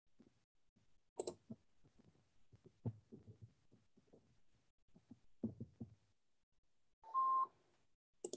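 Faint scattered clicks and soft knocks, then a short electronic beep, one steady high note lasting about half a second, near the end.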